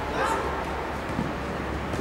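Large-hall ambience: faint, indistinct voices of players and onlookers echoing, over a low steady hum.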